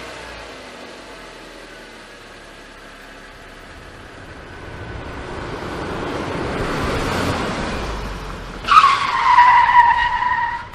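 Car driving, its noise slowly swelling over several seconds, then tyres screeching loudly near the end as the car is swerved hard.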